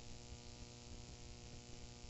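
Faint, steady electrical mains hum with a light hiss.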